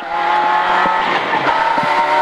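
Citroën Saxo rally car's four-cylinder engine running hard at high, fairly steady revs, heard from inside the cabin over road noise.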